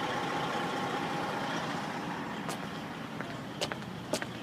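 Large vehicle's engine idling steadily, with a few sharp clicks in the second half.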